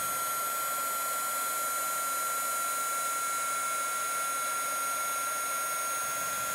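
Handheld craft heat tool (We R Memory Keepers Singe heat tool) running steadily, its fan blowing hot air with a constant high whine.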